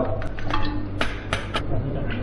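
A wire spider strainer and a ladle clink against a steel bowl and wok while fried scallion, ginger and garlic are lifted out of freshly made scallion oil. There are about five short, sharp metallic clinks over a steady low hum.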